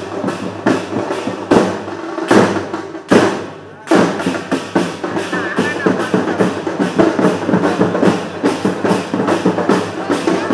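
A steady, fast drum beat, about three hits a second with a few heavier strokes early on, under the mingled voices of a crowd.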